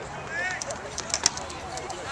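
Indistinct chatter of spectators outdoors, with a few sharp clicks a little past a second in.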